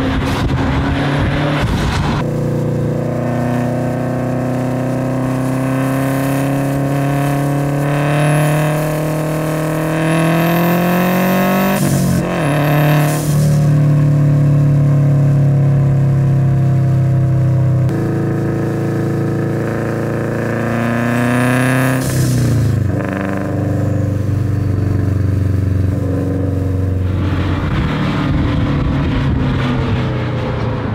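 Subaru WRX STI's turbocharged flat-four engine pulling hard, its pitch climbing slowly for several seconds and then dropping sharply at a gear change, twice, about twelve and twenty-two seconds in. High whistles rise just before the shifts.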